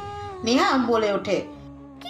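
A short vocal sound that rises and falls in pitch, heard once about half a second in, over held background-music notes.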